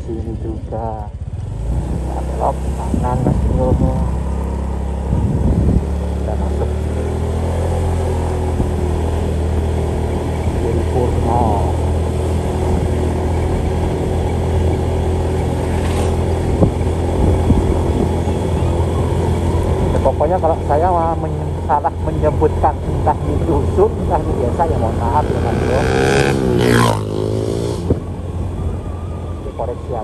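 Motorcycle engine running steadily at cruising speed while riding along a road. The pitch sweeps up and back down briefly about four seconds before the end.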